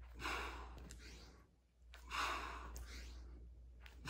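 A man's heavy breathing from exertion during explosive push-ups: two long, hard exhales, each about a second, with a short pause between.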